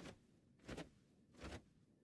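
Near silence, broken by three faint, short sounds about three-quarters of a second apart.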